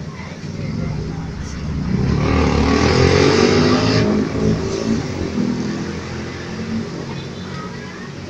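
A motor vehicle engine passing close by: it swells over a couple of seconds, is loudest around the middle, then fades away.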